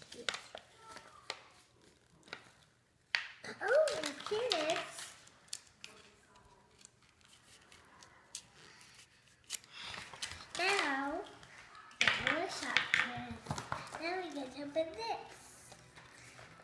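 Scissors snipping and plastic packaging crinkling as small toy blind-bag packets are cut open. A young girl's voice comes in short stretches between the cuts.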